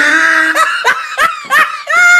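Loud laughter: one long held note, then a run of short rising-and-falling bursts, with a longer burst near the end.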